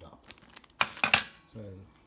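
Plastic packaging of a Trangia pan stand crinkling as it is handled, two short sharp rustles about a second in.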